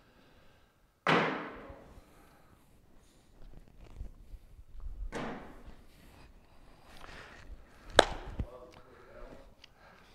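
Cornhole bean bags landing on a wooden board, each with a short echo from the hall. There are three hits: a loud one about a second in, a softer one midway, and a sharp, loudest one near the end.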